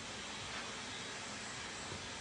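Steady, even hiss of background room noise, with no other sound.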